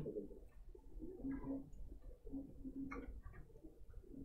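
Faint, low cooing in short notes repeated several times, with a few light clicks over a low room hum.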